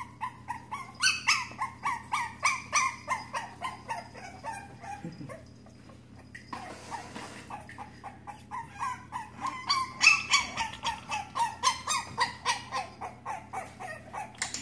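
Boston terrier puppy whimpering in a long series of short, high yips, about three a second, in two runs with a pause and a brief rustle between them.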